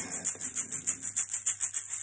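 Hand drum beaten in a fast, even rhythm of about six beats a second.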